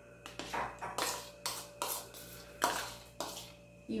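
A spoon scraping cooked, syrupy pineapple pieces out of a white bowl into a glass bowl of grated coconut: about seven soft, wet scrapes and plops.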